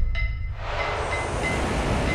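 Sound-designed rush of air: a deep rumble under a steady hiss that swells about half a second in, with a faint high ringing tone and a short knock just after the start.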